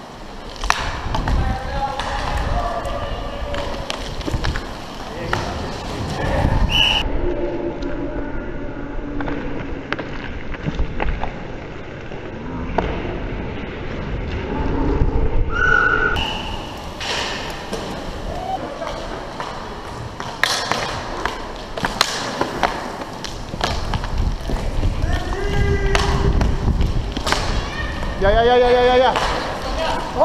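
Roller hockey play heard up close: a steady rumble of inline skate wheels rolling on the rink floor, broken by many sharp clacks of sticks and puck and thuds against the boards. Players shout at times, loudest near the end.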